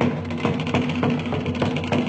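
Tahitian percussion playing a fast, driving rhythm: wooden slit-log drums (to'ere) struck in rapid, even strokes over a deep bass drum.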